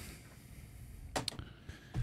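Quiet room tone with a couple of short clicks a little past a second in.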